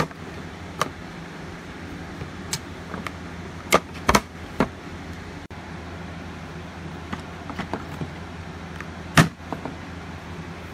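AA batteries being pressed one by one into a Bushnell Trophy Cam HD Aggressor trail camera's battery compartment: a series of short clicks and knocks of plastic and metal, the loudest a cluster about four seconds in and one near the end, over a steady low hum.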